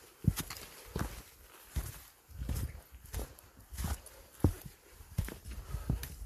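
Footsteps of a hiker walking over stones and dry fallen leaves on a rocky forest trail, at a steady pace of about three steps every two seconds, each step a thud with a rustle of leaves.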